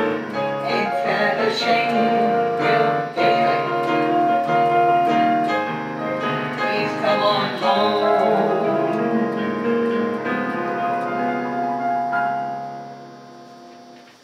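Electronic keyboard playing in a piano voice: sustained chords and melody notes, the final chord dying away near the end.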